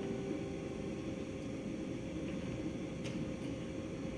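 The last acoustic guitar note dies away within the first moment, leaving steady low room noise, with one faint click about three seconds in.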